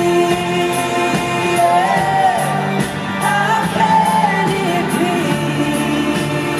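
Contemporary Christian worship song: a woman's voice sings a melody that holds notes and bends in pitch, over a full band accompaniment with steady percussion.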